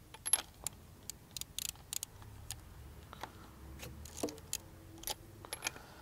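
Faint, irregular metallic clicks and clinks of a wrench working a spark plug loose on an old Mercury 50 hp outboard's powerhead.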